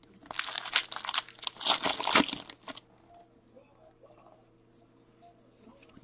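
Hockey card pack wrapper torn open and crinkled in the hands for about two and a half seconds, then only faint small handling sounds.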